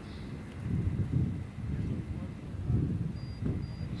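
Wind buffeting the microphone, with low rumbling gusts about a second in and again near three seconds, and two brief faint high peeps near the end.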